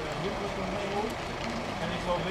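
Voices of people talking at a distance, indistinct, over a steady low background rumble.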